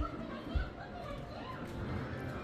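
Faint voices in the background, with two short low bumps of the phone being handled as it pans, one at the start and one about half a second in.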